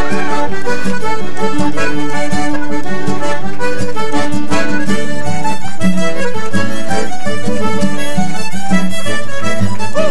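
Irish traditional polka played live at a brisk pace: a Paolo Soprani button accordion and a fiddle carry the tune together over the band's rhythm accompaniment.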